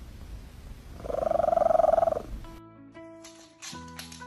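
Domestic cat purring close to the microphone, one long purr breath swelling about a second in. Music with sustained notes takes over suddenly near the end.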